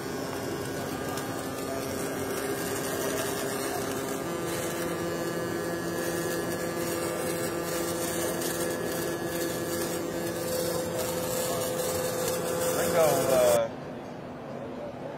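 Robotic MIG welding arc running a fill pass on a steel pipe (STT process): a steady buzzing hiss with a few humming tones that step up in pitch about four seconds in, as the welding current rises. A man's voice comes in briefly near the end.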